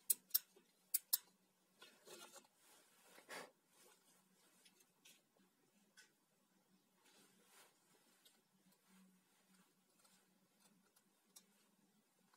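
Quiet handling of an angle grinder's opened switch and wiring with gloved hands: four sharp clicks in the first second or so, then soft rustling and faint scraping.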